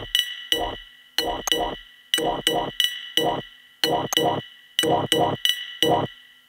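Home-made electronic track: a busy, syncopated pattern of short, sharply struck pitched hits that die away quickly, singly and in quick pairs, over a steady held high tone.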